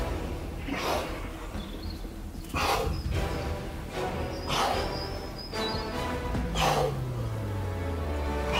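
Background electronic music with a steady bass line, swells that come about every two seconds, and a falling bass slide near the end.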